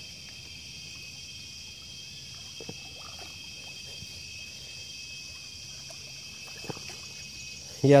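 A steady, high-pitched chorus of insects, with a couple of faint knocks about two and a half and six and a half seconds in.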